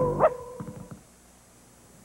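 The last held note of a short sung station jingle dying away, with one short rising cartoon yip about a quarter second in. Then it goes almost quiet.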